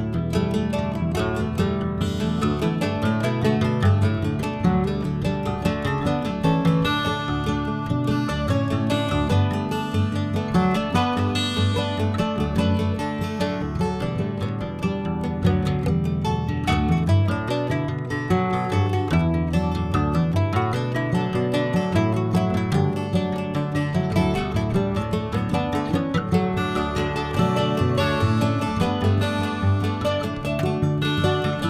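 Steel-string acoustic guitar playing a continuous melodic piece, many picked notes ringing together at a steady volume.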